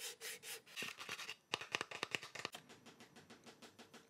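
The plastic shell of a cheap aftermarket battery grip for the Blackmagic Pocket Cinema Camera 4K/6K being handled close to the microphone, giving a quick, uneven run of small clicks and rubbing scrapes. The sound marks cheap, flimsy plastic.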